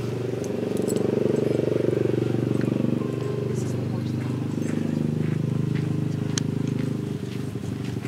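An engine running steadily with a low, even hum that swells slightly about a second in and eases near the end, its pitch drifting a little.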